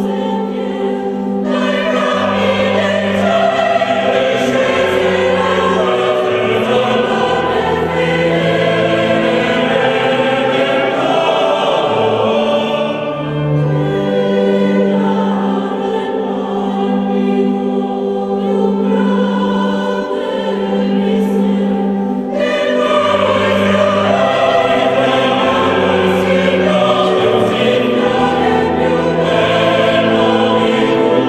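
Choral music: a choir singing long held notes over a low accompaniment, dipping briefly twice, near the middle and about two-thirds through.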